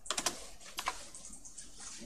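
Computer keyboard keys clicking: a quick run of a few keystrokes at the start, then one or two more just under a second in.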